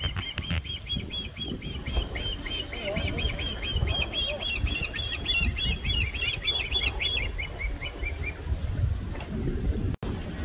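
Osprey calling: a fast run of repeated high, whistled chirps for about eight seconds, quickening and then breaking into a few spaced notes before stopping.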